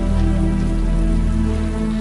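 Steady rain falling, with background music holding long, steady notes underneath.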